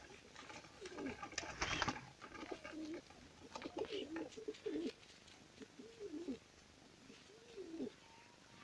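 Domestic pigeons cooing in the loft: a series of short rising-and-falling coos about every second or so in the second half, after a brief rustle of handling and feathers between about one and two seconds in.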